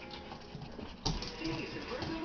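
Cairn terrier puppies making small sounds as they beg for attention, with a sudden loud thump about a second in.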